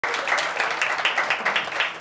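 Audience applauding, with a steady beat of about four claps a second running through it.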